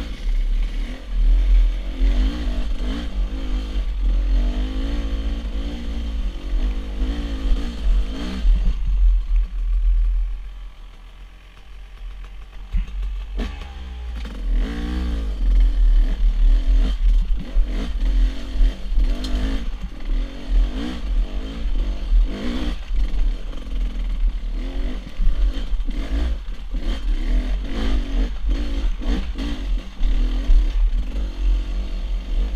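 Dirt bike engine revving up and down as it climbs a rocky trail, with clattering knocks from the bike over rocks and a heavy low rumble on the onboard microphone. The engine eases off for a few seconds about a third of the way in, then revs up again.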